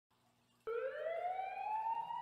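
A siren sound in a rap track's intro starts suddenly after a short silence and rises slowly and steadily in pitch, like a siren winding up.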